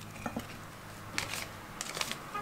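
A few faint, short taps and ticks as a paper sachet of baking powder is emptied over a glass mixing bowl with a whisk in it.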